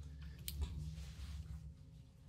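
A single sharp click about half a second in, over a low steady room hum.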